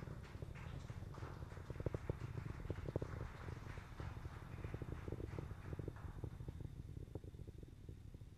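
Distant low rumble and crackle of a Falcon 9 rocket's first-stage engines during ascent, heard from the ground, thinning a little near the end.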